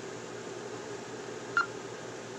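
Steady low room hum, with one short high beep about a second and a half in.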